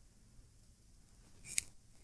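Near silence: quiet room tone over a lectern microphone, broken by one short, faint click about three-quarters of the way through.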